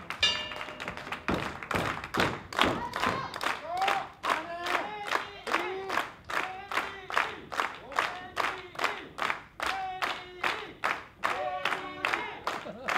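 Audience clapping in a steady rhythm, about three claps a second, with a voice calling out repeatedly over it.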